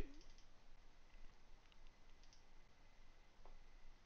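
Near silence with a few faint clicks of a computer mouse.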